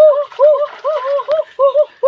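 A high-pitched, chipmunk-like voice chattering in quick wordless syllables, each rising and falling in pitch, about five a second.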